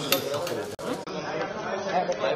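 Only speech: a man reading a statement aloud in Bengali into microphones, with a sharp click just after the start and an abrupt change in sound quality about a second in.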